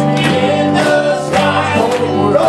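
Male gospel quartet singing in harmony, accompanied by guitar and keyboard.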